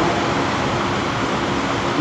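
Steady, even rushing background noise: the room tone of the hall, with no distinct events.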